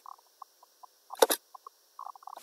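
Computer mouse clicks: a few faint ticks, then a quick cluster of sharp clicks a little over a second in.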